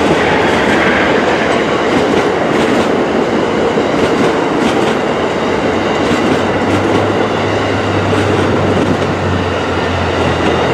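Amtrak passenger coaches rolling past at close range: a steady rumble of steel wheels on rail with scattered clicks over the rail joints. A low hum joins about seven seconds in.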